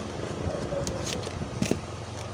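Hands handling cube packaging and plastic wrapping: rustling with a few short, sharp crackles about a second in and near the end, over a steady low background rumble.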